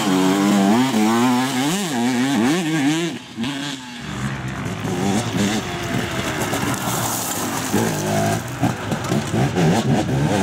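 Off-road dirt bikes riding a dirt track, their engines revving up and down with throttle and gear changes as they pass. There is a short lull about three seconds in before another bike comes through.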